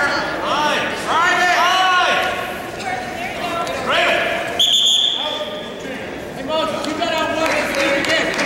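Shouting voices of coaches and teammates urging on a wrestler, then about halfway through a referee's whistle gives one short, steady blast that stops the wrestling.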